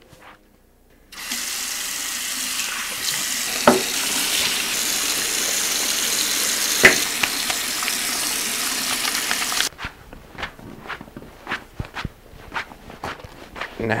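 Water running from a kitchen tap into a sink while soapy hands are washed under it. It comes on suddenly about a second in and shuts off just before ten seconds, with two sharp knocks while it runs, and a run of small clicks and taps follows.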